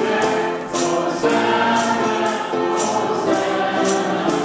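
A church choir singing an upbeat hymn in held notes, with a hand-held tambourine struck in time about once or twice a second.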